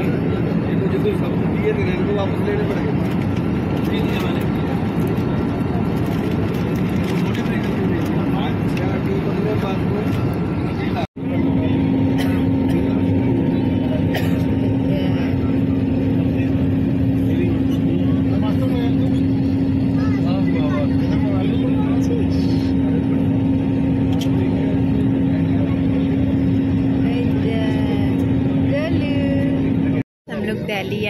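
Airliner cabin noise: a steady, loud rush of engines and airflow with passengers' voices murmuring underneath. After a brief cut about 11 s in, a steady low hum sits over the cabin noise while the aircraft is on approach.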